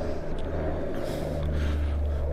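Steady low rumble of motor-vehicle noise, with no clear rise or fall.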